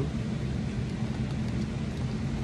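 A steady low hum, several held low tones over an even hiss, with no distinct knocks or clicks.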